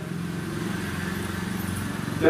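A steady low motor hum, holding one even pitch throughout.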